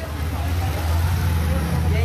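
A motorcycle engine running low and steady as the bike rides past close by, loudest in the middle of the stretch.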